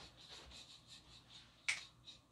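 A single short, sharp click near the end, over otherwise quiet room tone.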